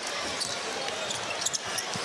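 Basketball being dribbled on a hardwood arena court, a few sharp bounces over steady crowd noise.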